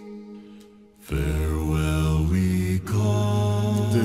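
Vocal music: after a short lull, an unnaturally deep bass voice comes in about a second in and sings long low notes that change pitch twice, with fainter voices in harmony above.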